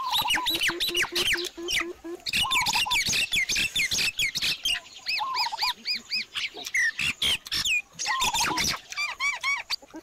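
Birds calling: many rapid, overlapping chirps and whistles repeating in quick runs. A fast, stuttering lower call is heard near the start.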